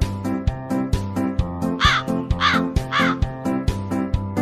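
Background music with a steady beat throughout. Around the middle, three short cawing calls, like a crow sound effect, come about half a second apart over the music.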